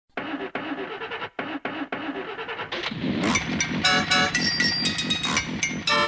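A car engine sound broken by a few brief dropouts. About three seconds in, keyboard-led music starts and carries on.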